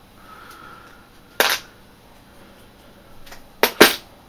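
Hammer blows on a metal leather hole punch, driving it through the leather into a wooden block: one sharp strike about a second and a half in, then two quick, louder strikes close together near the end.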